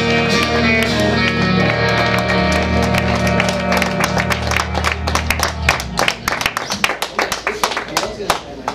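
Live rock band with guitars, bass and drums holding the song's final chord, which cuts off a little before six seconds in. A quickening run of sharp hits carries on through the second half as the song ends.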